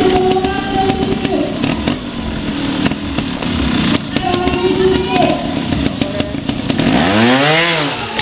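Trials motorcycle engine ticking over with short throttle blips, then a sharp rev that rises and falls near the end as the bike launches up onto a tall wooden box. A voice talks over the engine in the first half.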